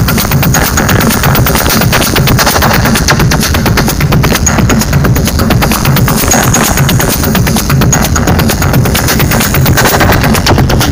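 Loud live techno played over a club sound system: a steady, rapid run of percussive hits over a heavy bass.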